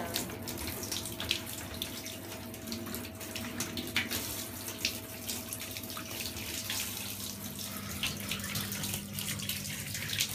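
Handheld shower head running, water spraying steadily into a bathtub with scattered small splashes.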